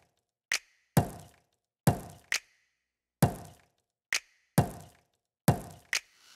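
A sparse run of electronic drum hits in the background music: about nine sharp thuds at uneven spacing, each with a short tail falling in pitch, with dead silence between them.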